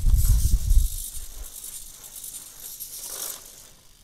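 Hobby servo motors in a 3D-printed quadruped robot's leg buzzing and whirring as the leg is waved up and down, loudest in the first second. The buzz stops shortly before the end.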